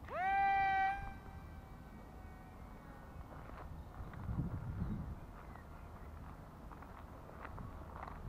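The small electric propeller motor of a supercapacitor-powered foam toy glider spins up at launch with a quick rising whine. It then holds a steady high whine that fades away within a couple of seconds as the glider flies off.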